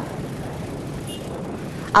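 Steady street traffic noise from a convoy of motorbikes riding slowly along a road, an even rumble with no distinct events.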